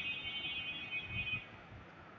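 A faint, high-pitched electronic tone that starts suddenly and fades out over about a second and a half.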